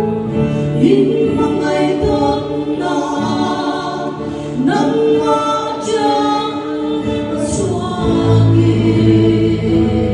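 A woman and a man singing a duet through microphones over backing music. A fuller bass accompaniment comes in about eight seconds in.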